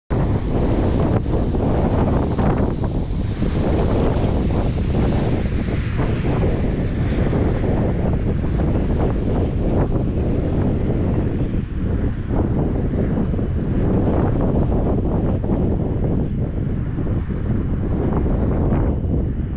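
Wind buffeting the microphone: a loud, gusting rumble that rises and falls without a break.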